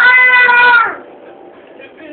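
A domestic cat meowing once, a single call held at a steady pitch for just under a second.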